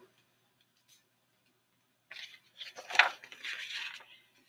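Pages of a hardcover picture book being turned open, starting about two seconds in: a papery rustle with one sharper flap near the end.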